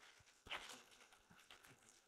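Near silence, with one faint knock about half a second in.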